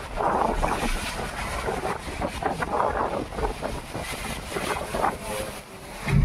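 Wind rushing and buffeting against the microphone through the open window of a moving car, in uneven gusts.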